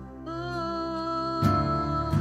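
Live church worship band music: a singer holds one long note over keyboard and guitar, and a louder chord with bass comes in about one and a half seconds in.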